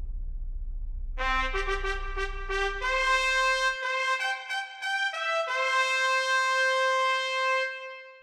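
A brass trumpet fanfare: a run of short notes about a second in, then longer notes, ending on a long held note. A low rumble sits beneath it until about halfway.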